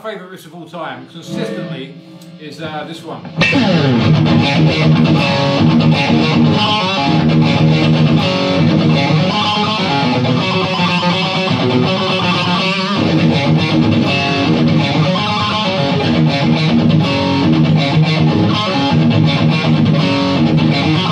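Electric guitar played through an amp with added gain, riffing in heavy metal style. It is quieter and sparser for the first few seconds, then turns to a loud, dense riff from about three seconds in.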